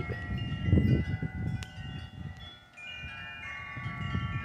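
Wind chimes ringing: several high, clear tones struck at uneven moments and each fading slowly. A low rumble sits under them in the first second.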